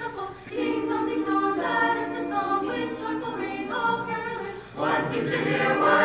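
Mixed high-school choir singing a cappella, moving through held chords one after another. The choir comes in louder and fuller about five seconds in.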